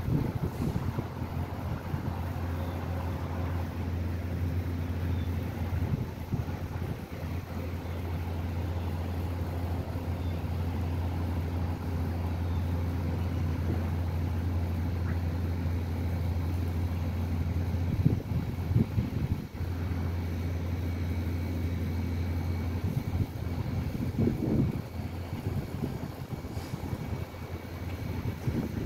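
A steady low hum, with a few brief rumbling bursts in the second half, the loudest about eighteen seconds in.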